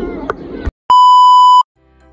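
A single loud, steady electronic beep tone lasting under a second, edited in at a cut between scenes. Outdoor crowd noise stops abruptly just before it, and soft music begins faintly near the end.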